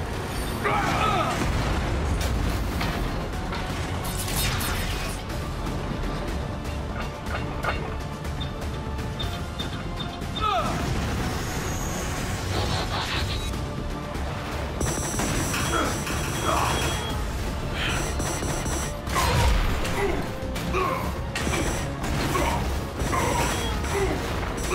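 Cartoon battle soundtrack: background music under sci-fi robot-combat sound effects, with booms, metallic mechanism clanks and impacts, and short grunts and yells. In the second half a high electronic tone pulses on and off.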